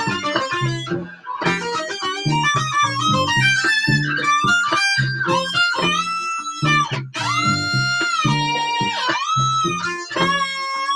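Acoustic violin played through a Boss ME-80 multi-effects pedal with its lower-octave and distortion effects on: quick runs of bowed notes doubled an octave below, with a few notes slid up into and held near the end.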